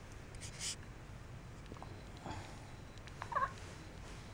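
Quiet room with small sounds from a baby: a soft breathy rustle about half a second in, then a short, high, wavering squeak just past three seconds.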